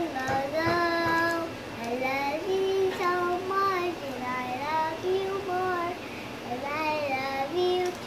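A young girl singing her own made-up song with no accompaniment, holding long notes and sliding up and down between them.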